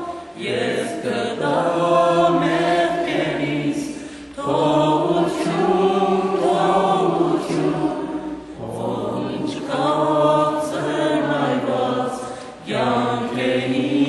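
Voices singing a hymn together in long held phrases of about four seconds each, with short breaks for breath between them.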